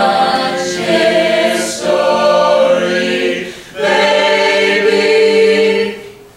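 Mixed-voice a cappella group singing long held chords without words, in three phrases with brief breaks between them; the last chord breaks off near the end.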